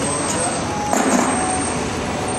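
Steady city street traffic noise from vehicles running nearby.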